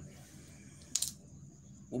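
A single short, sharp click or clink about halfway through, over a faint steady low hum.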